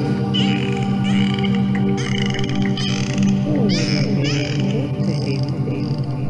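Binaural-beat meditation track: a steady drone of low sustained tones, with short, warbling, high-pitched chirping glides laid over it about once a second.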